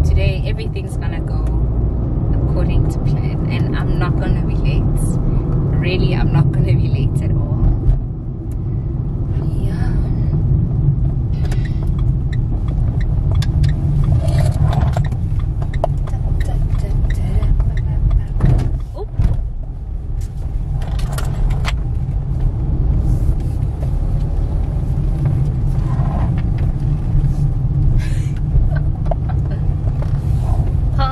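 Steady low rumble of a car's engine and tyres heard from inside the cabin while it is being driven.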